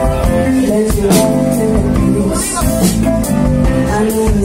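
Live funk band playing, with electric guitar and bass guitar over a steady groove.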